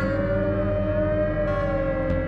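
Saxophone and synthesizers in a free-improvised jam: one long held note that sways slowly up and down in pitch, like a siren, over steady low synthesizer drones.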